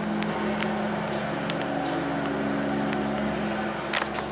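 Millennium hydraulic elevator's pump motor humming steadily as the car rises, with a few faint clicks and a sharper click near the end.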